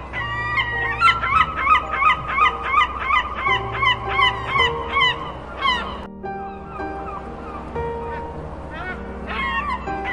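A rapid series of short honking bird calls, each falling in pitch, about three a second. They stop about six seconds in and start again near the end, over background music with long held notes.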